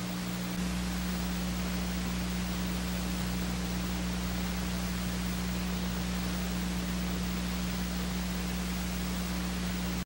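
Steady hiss of an old recording with a low electrical hum underneath, and no race sound; the hum grows slightly louder about half a second in.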